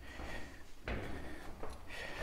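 Footsteps going down metal stairs: one clunk on a step about a second in and a lighter knock near the end.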